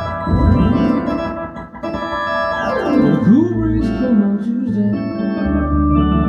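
Keyboard playing a ballpark-style organ sound, with held chords over steady bass notes. Several swooping pitch bends slide up and down through the chords.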